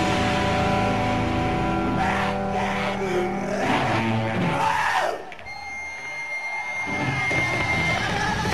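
A live punk rock band with loud distorted electric guitars: a held chord rings out, then sliding, wailing pitches. About five seconds in, the playing drops away suddenly, leaving a thin steady high whine and lower rumble from the stage amplifiers.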